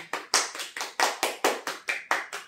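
A small group of people clapping their hands in an even rhythm, about six claps a second.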